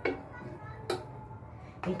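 Two light clicks of a spoon knocking against a cup of creamy scouring paste, about a second apart.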